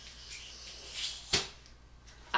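Champagne bottle being opened by hand: a soft hiss of gas escaping as the cork is eased out, then a single sharp pop a little over a second in as the cork comes free.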